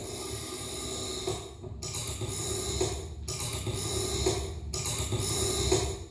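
A live experimental noise passage: a quiet, hissing, unpitched texture that comes in swells, broken by short gaps about every second and a half, and that cuts off near the end.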